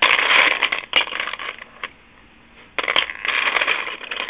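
Small hard resin charms clattering and clicking against one another as a hand rummages through a pile of them. There are two spells of rattling with a short quiet gap in the middle.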